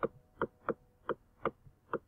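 Computer mouse clicking: six short, sharp clicks about 0.4 s apart.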